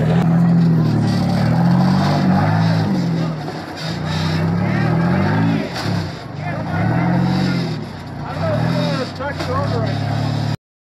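Off-road rig's engine revving up and down again and again while it crawls over rocks, each rise and fall in pitch lasting about a second.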